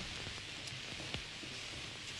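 Pan of flaked oats, leeks and water on the stove heating towards the boil, with a faint steady hiss.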